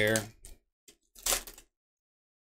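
Torn foil trading-card pack wrapper crinkling as the cards are pulled out of it, a short rustle about a second in, with a few faint ticks before it.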